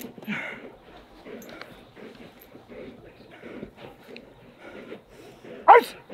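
Young German Shepherd gripping and worrying a jute bite pillow held by a helper lying on the ground, with soft dog noises and scuffling throughout. A loud shouted command cuts in near the end.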